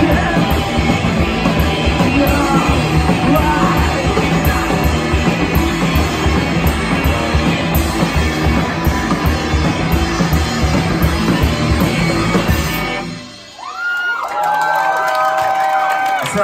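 Live rock band with distorted electric guitars, bass, drums and vocals playing loud and fast, stopping suddenly about three-quarters of the way through. Crowd yells and whoops follow.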